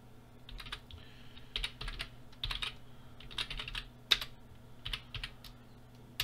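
Computer keyboard being typed on in short bursts of several keystrokes each, with one sharper key strike about four seconds in. A faint steady low hum sits underneath.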